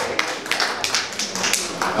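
A few scattered, irregular hand claps from the audience, with faint crowd chatter underneath.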